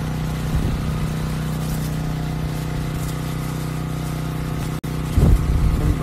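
A motor-driven sprayer pump runs with a steady low hum while a hose lance hisses out a water spray onto trees. The sound cuts out for an instant about five seconds in, followed by low rumbling thumps.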